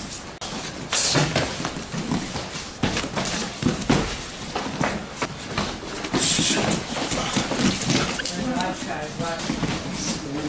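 Repeated irregular thuds and scuffs of bodies and bare feet on foam gym mats during MMA takedown drills, with voices in the background.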